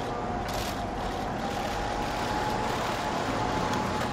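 Steady street traffic noise, with vehicles running past and a brief hiss about half a second in.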